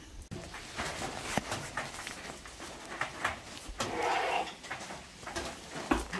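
Heavy rain drumming on a hut's tin roof, a dense patter of small hits heard from inside the hut, with a short muffled sound about four seconds in.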